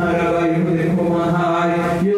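A man singing into a handheld microphone, holding one long, steady note.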